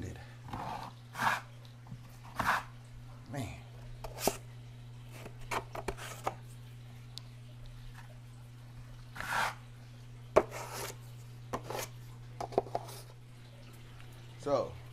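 Taping knife spreading joint compound over a drywall crack: a series of short, irregular scraping strokes about a second apart, over a steady low hum.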